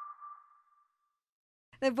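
The last note of an intro jingle ringing on alone as a single steady tone and fading out within about a second, followed by silence. A woman starts speaking near the end.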